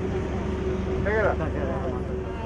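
A motor engine running steadily with a low, even hum, and a person's voice briefly about a second in.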